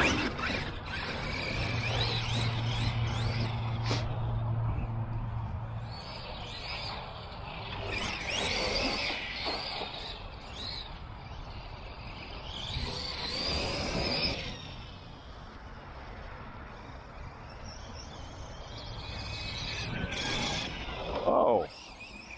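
Losi LST 3XLE brushless electric RC monster truck driving on grass: the motor and drivetrain whine in several bursts that rise and fall in pitch as it accelerates and lets off.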